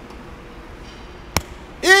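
A single sharp clack from the loaded hack squat machine a little past halfway, over low gym room tone. A man's shout of encouragement starts near the end.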